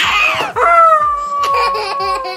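A toddler squealing with laughter: a short shriek, then one long high squeal that falls slightly in pitch.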